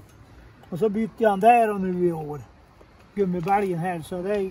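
Speech only: a person talking, in two stretches with a short pause between.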